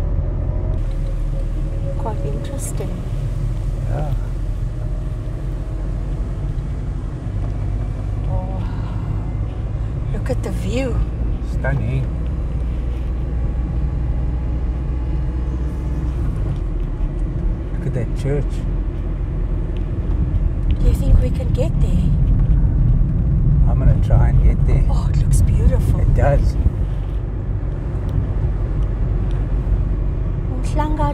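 Steady low rumble of a car driving slowly, heard from inside the cabin, with intermittent low voices.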